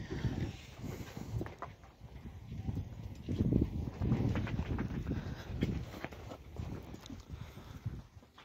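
Zebu cattle moving about on sandy ground close by: irregular low thuds and scuffing rustles, with no calls.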